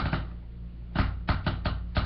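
Light, sharp clicks and taps from trading cards being handled in the hands: one at the start, then about five quick ones in the second second, over a steady low hum.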